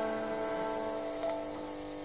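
Acoustic guitar music: plucked notes ringing out and slowly fading, with a soft new note a little past halfway.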